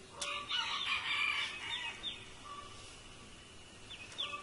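Birds calling: a dense burst of calls in the first second and a half, then a few short falling chirps.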